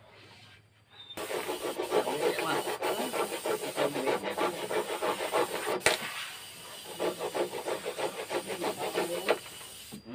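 Hand saw cutting wood in quick, rhythmic back-and-forth strokes, in two runs with a sharp knock and a brief pause between them.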